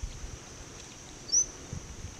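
Faint steady high-pitched insect drone with a single short bird chirp about a second and a half in.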